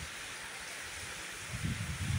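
Steady rain falling on wet paving and garden foliage. About a second and a half in, gusts of wind start buffeting the microphone with irregular low rumbles.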